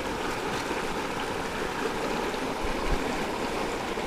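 Shallow rocky stream flowing steadily, with a few soft low bumps.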